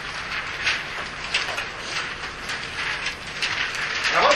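A roomful of students rustling paper and rummaging in bags and notebooks to get out paper, a dense run of small rustles and clicks.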